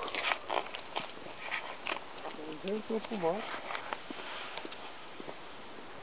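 Scattered crunching and clicking noises in the first half, then a short wordless voice sound, a rising-and-falling hum, about three seconds in.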